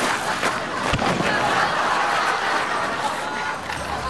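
A thud about a second in, as a person falls to the ground, then a couple of seconds of rough scraping noise on gravel.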